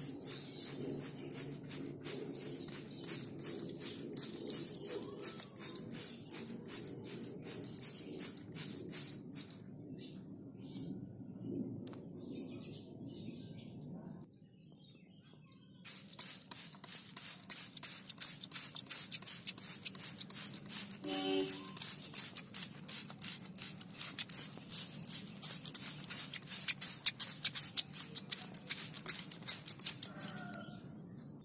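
Hand-held trigger sprayer being squeezed rapidly over and over, each squeeze a short hiss of insecticide spray, with a brief pause about halfway through.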